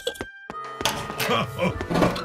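Cartoon soundtrack: light background music with voice sounds and a short thunk.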